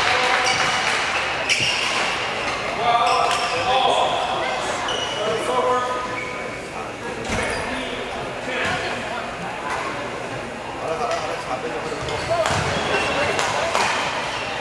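Badminton rally: sharp racket strikes on a shuttlecock at irregular intervals, echoing in a large hall, over nearby voices chatting.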